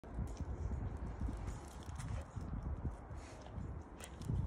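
Footsteps on a wet asphalt road, a run of irregular low thuds mixed with rumble from a handheld phone being carried along.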